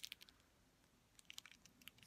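Near silence with a few faint crinkles and ticks of a small plastic bag being handled, just at the start and again several times in the second half.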